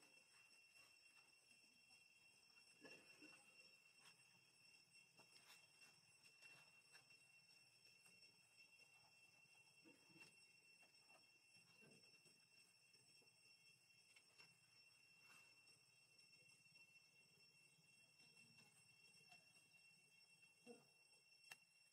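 Near silence: a faint, steady high-pitched tone with a few soft ticks and scuffs.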